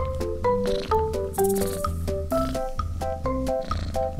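Background music: a melody of short, steady notes over a steady beat.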